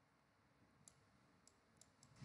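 Near silence: room tone with a few faint, short clicks.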